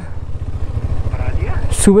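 KTM Adventure motorcycle engine running at low revs as the bike rolls slowly at about 10 km/h, a steady low pulsing rumble. A voice says a word near the end.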